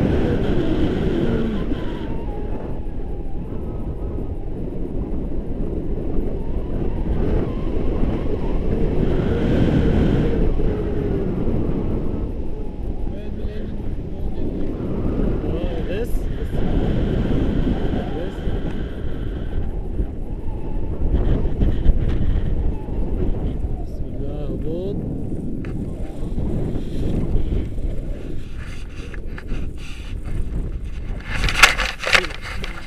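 Airflow buffeting the camera's microphone during a tandem paraglider flight: a heavy, low rumble that surges and eases.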